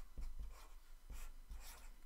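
A felt-tip marker writing on paper, in several short faint strokes as numbers are written out.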